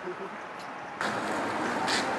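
Steady outdoor background noise like distant city traffic, which gets abruptly louder and fuller about a second in.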